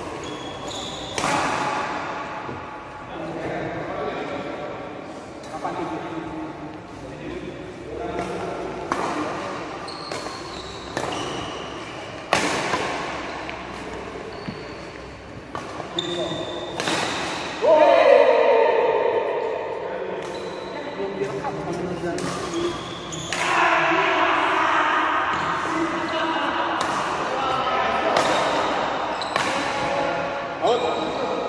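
Badminton rackets striking a shuttlecock in a rally: sharp smacks every one to two seconds, echoing in a large hall, with players' voices between them.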